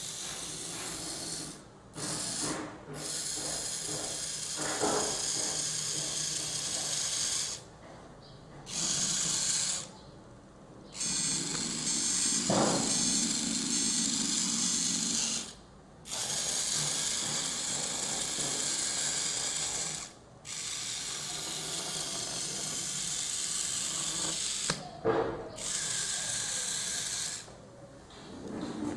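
Small hobby servo motors driving the wheels of a toy robot car, their plastic gearboxes whirring in runs of a few seconds, stopping and starting again about half a dozen times as the car drives and turns.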